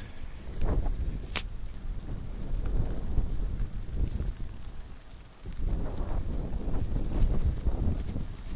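Strong wind buffeting an action camera's microphone while riding a mountain bike along a dirt track: a low, gusting rumble that rises and falls, with one sharp click about a second and a half in.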